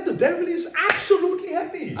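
A single sharp slap of a man's hands clapped together, about a second in, amid a man's voice.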